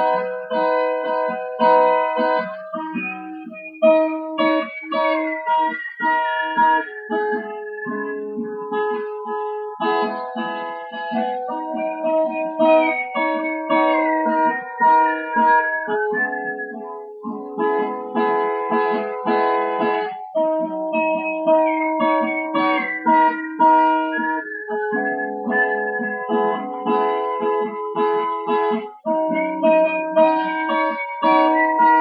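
An acoustic guitar strummed in repeating chord patterns, with a whistled melody over it that slides downward in phrases recurring every nine seconds or so.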